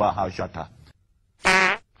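Comedic fart sound effects edited over a preacher's voice; one loud, wavering fart about a second and a half in.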